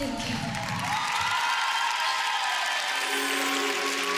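Studio audience applauding and cheering, with soft music underneath.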